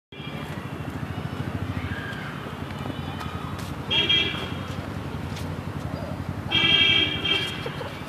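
Street traffic running steadily, with a vehicle horn honking twice: a short toot about four seconds in and a longer one of about a second near the end.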